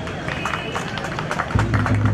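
Audience clapping. About one and a half seconds in, music with a heavy bass starts up under it.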